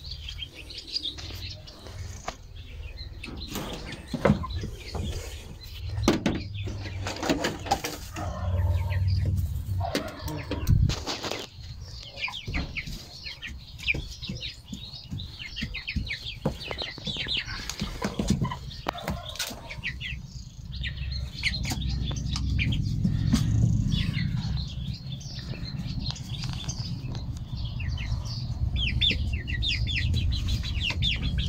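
Young white broiler chickens peeping repeatedly with high, short chirps. There are a few sharp knocks in the first dozen seconds and a low rumble underneath.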